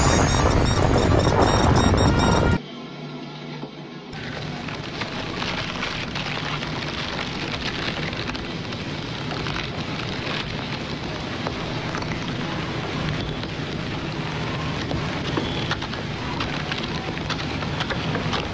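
A loud burst of music for the first two and a half seconds, cut off abruptly. A steady hiss with faint scattered crackles and clicks follows from about four seconds in, from video playback picked up by the microphone.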